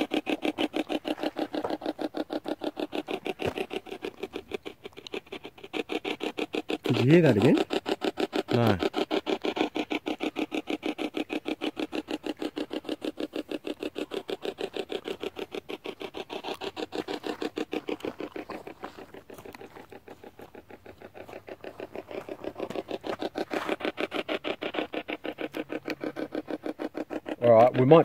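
A spirit box (ghost box) app on a phone sweeping radio stations, giving a fast, even, choppy stutter of static with snatches of voice-like sound; a louder snatch comes about seven seconds in. The investigators use it to try to pick up spirit voices.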